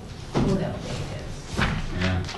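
A sudden thump about a third of a second in, with people talking around it.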